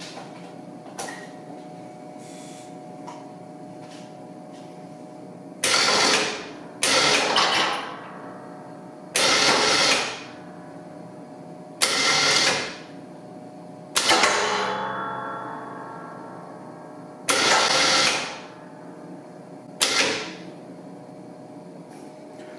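Electric ATV winch run in seven short bursts of one to two seconds each, raising and lowering a WARN snow plow on its push frame, over a steady hum.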